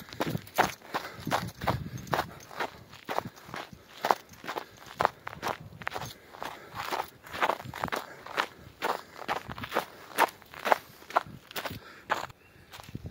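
A person's footsteps on a snowy, leaf-strewn woodland trail, at a steady brisk pace of about two to three steps a second.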